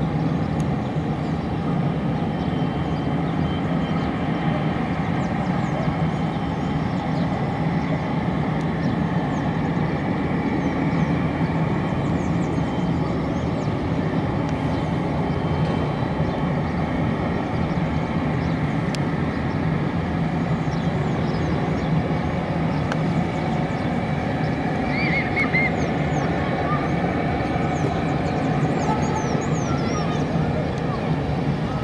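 Distant airplane engines running steadily while the aircraft taxis, a constant low rumble with hiss.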